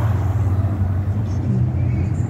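An SUV drives past close by on the road, its engine and tyre noise swelling briefly near the start, over a steady low rumble of wind on the microphone.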